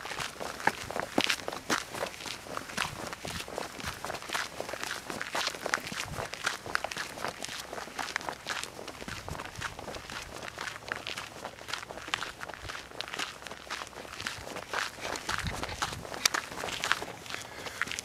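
Footsteps of a hiker walking at a steady pace on a gravel and dirt trail.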